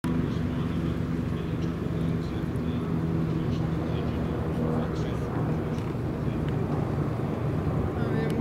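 A steady low hum under outdoor background noise, easing after about five seconds, with faint voices in the background.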